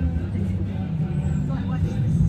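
A steady low motor drone, with a person's voice briefly near the end.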